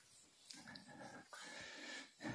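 Faint, short squeaks of a marker writing on a whiteboard, several strokes in a row, in a near-silent lecture hall.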